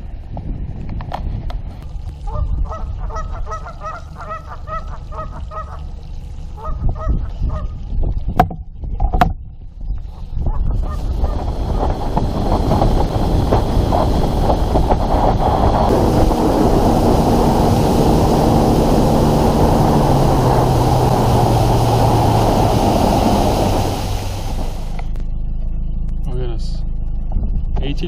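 A goose honking in short repeated calls for a few seconds early on. Then, from about ten seconds in, a boat running on open water: loud steady wind and water noise with an engine tone that falls in pitch and cuts back about 24 seconds in, leaving a low hum.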